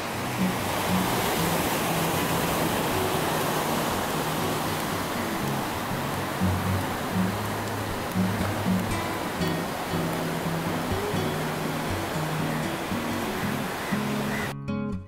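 Ocean surf breaking on a sandy beach, a steady rush of waves, with background music playing low underneath.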